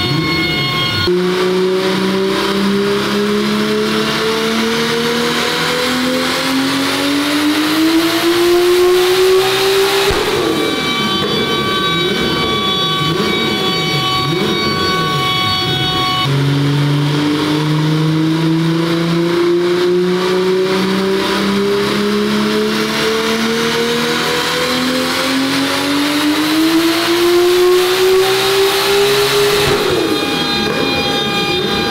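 Turbocharged VR engine of a Mk2 VW Golf making two full-throttle pulls on a chassis dyno at about 1 bar of boost, its pitch climbing steadily through the revs each time. About ten seconds in it drops back and runs lower and unsteadily for several seconds before the second pull. These are ignition-timing runs: more advance is added each pull until power stops rising.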